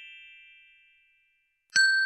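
Electronic chime sound effects from a subscribe-button animation. A bright ding rings and fades away over the first second. Near the end a second, louder ding starts sharply, as the cursor clicks the notification bell.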